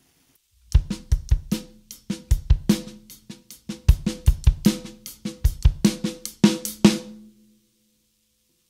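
Drum kit playing a beat of sixteenth notes on the hi-hat with broken sixteenth-note strokes on the snare drum and kick drum underneath. It starts about a second in and stops near the end, the drums ringing out briefly.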